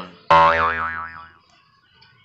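Cartoon 'boing' sound effect: a sudden twangy tone whose pitch wobbles quickly up and down as it fades out over about a second.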